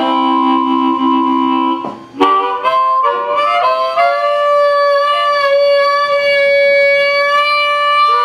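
Harmonica played cupped against a microphone: a held chord, a brief break with a click about two seconds in, a few quick changing notes, then one long held note through the second half.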